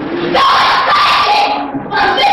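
A person's loud shout, held for just over a second, starting about half a second in, heard through a worn VHS recording of a stage performance.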